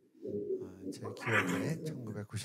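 A man's voice speaking quietly into a microphone, with no clear words.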